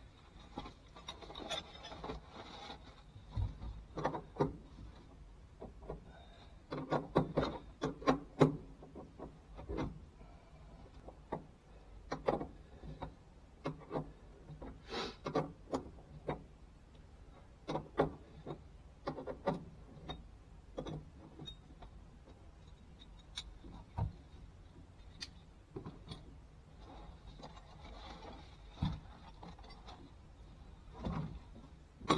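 Irregular clicks, knocks and rubbing from hand tools and parts being handled while a car interior is stripped out. The clicks come thickest about seven to nine seconds in and again around fifteen seconds.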